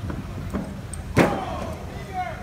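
A man's feet landing on a police patrol car's roof: a lighter thump about half a second in, then a loud metallic bang a little over a second in that rings on briefly.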